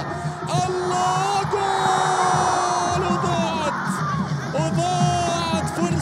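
A football commentator's long, drawn-out excited cries, holding and sliding in pitch, over loud stadium crowd noise with chanting and singing.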